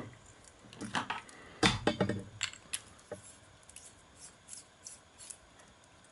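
Handling noise as a small frosted glass candelabra bulb is screwed into a plastic candle socket base: a knock a little under two seconds in, then a run of light clicks and scrapes that fade toward the end.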